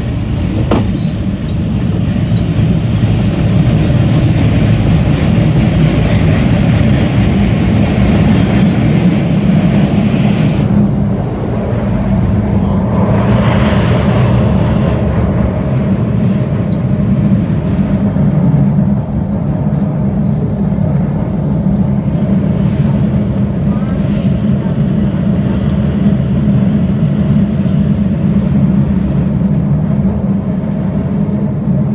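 Older MBTA Red Line subway car running through a tunnel: a loud, steady low rumble of wheels on rail and running gear. A brief higher-pitched burst comes about halfway through.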